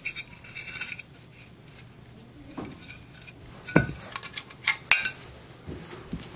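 Metal parts of a dismantled vacuum cleaner motor being handled: scraping and rubbing in the first second, then a few sharp metallic clinks about four and five seconds in.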